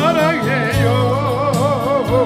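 A male singer singing with a strong, wavering vibrato into a handheld microphone, amplified through a PA, over acoustic guitar and steady bass accompaniment.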